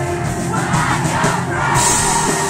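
A live rock band with piano playing loudly while a crowd of voices sings and shouts along, the crowd coming in strongly about half a second in.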